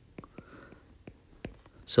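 Faint, scattered sharp clicks of a stylus tapping on a tablet's glass screen during handwriting.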